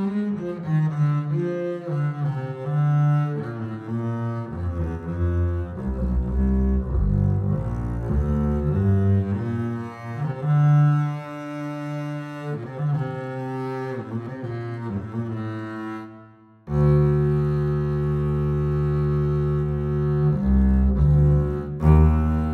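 Sampled solo double bass (Embertone's Leonid Bass virtual instrument) played bowed from a keyboard in sustain mode, a melodic line of legato notes with slurs and bow changes. After a brief break about three-quarters of the way in, it holds long low notes.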